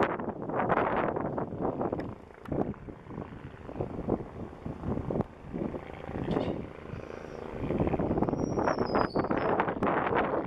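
Wind buffeting the microphone in irregular gusts, over a distant Agusta A109S Grand helicopter coming in to land.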